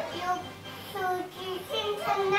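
A toddler vocalizing in a sing-song voice: several short, pitched syllables, with background music underneath.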